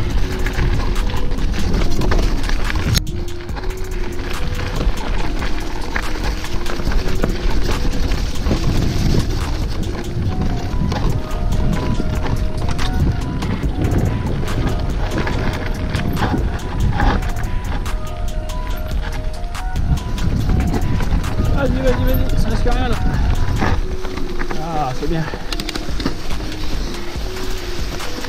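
Mountain bike ridden down a rough forest dirt trail: a constant low rumble of wind and tyre noise on the handlebar camera's microphone, with many small rattles and knocks as the bike runs over the ground. Background music with a melody plays over it.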